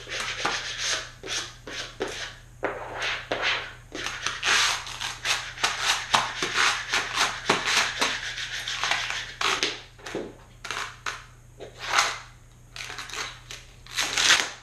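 Plastic squeegee scraping over transfer paper laid on a cut vinyl decal, burnishing it down in quick repeated strokes.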